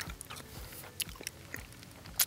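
Faint chewing with a few sharp crunchy clicks: a mouthful of freeze-dried biscuits and gravy that is still crunchy, not fully rehydrated.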